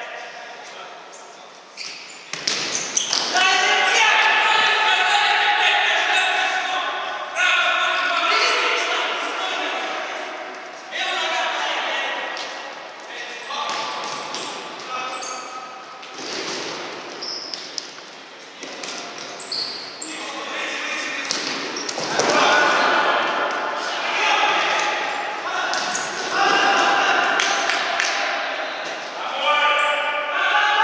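A futsal ball being kicked and bouncing on a wooden gym floor, sharp knocks that echo in the hall. Long, loud voices call and shout over them throughout.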